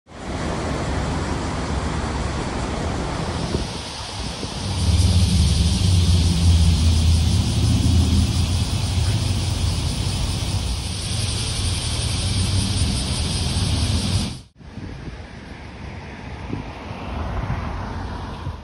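Outdoor street ambience: a steady hiss of road traffic with wind buffeting the microphone. A heavy low rumble comes in about five seconds in and cuts off abruptly near fourteen seconds, after which the ambience is quieter.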